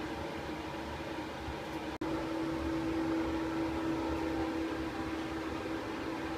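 Steady machine hum with one held tone over a noise bed, like a fan or ventilation unit. It breaks off for an instant about two seconds in, then carries on slightly louder.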